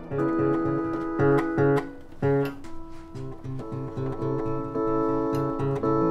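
Acoustic guitar playing a steady picked pattern: a low note repeating about three times a second under ringing higher notes.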